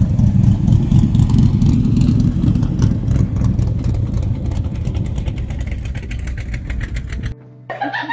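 V8 engine of a chrome-bumper C3 Chevrolet Corvette running through side-exit exhaust pipes as the car drives past and pulls away, fading steadily. It cuts off suddenly near the end.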